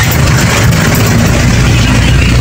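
The engine of a passenger vehicle running steadily, heard from inside the cabin as a loud, even low drone with road noise.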